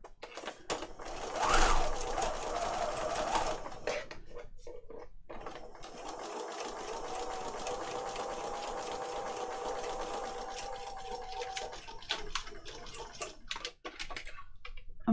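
Electric sewing machine stitching through card: a short louder burst in the first few seconds, then a long steady run of stitching that stops a couple of seconds before the end, followed by a few clicks.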